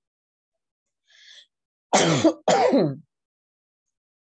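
A person clearing their throat twice, just after a short breath.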